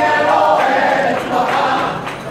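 A crowd of many voices singing together in unison.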